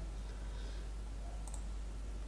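A single faint computer mouse click about one and a half seconds in, over a steady low electrical hum.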